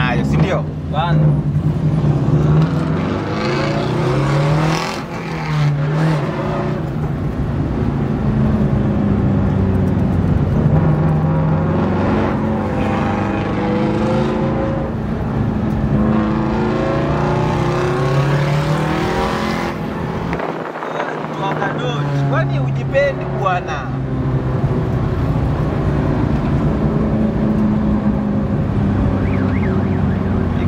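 Rally car engine heard from inside the cabin, its pitch repeatedly climbing and then dropping back as it accelerates and shifts up through the gears.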